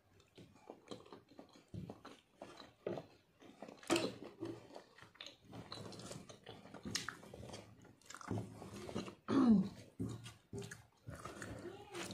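A person chewing a mouthful of food with irregular wet mouth clicks and smacks, and a cough about nine seconds in.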